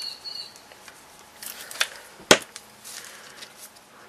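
Faint scraping and handling of a small cardstock heart as liquid glue is spread over it from a glue applicator, with one sharp click a little past halfway.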